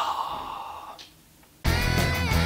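A man's breathy exhalation fading out over about a second, then a brief near-silence, and electric-guitar rock music cutting in suddenly near the end.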